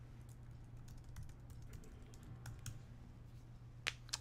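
Faint typing on a computer keyboard: scattered light key clicks, with one sharper click near the end, over a low steady hum.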